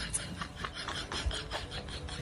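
Screw cap of a plastic bottle being twisted by hand: a string of small, irregular scraping clicks.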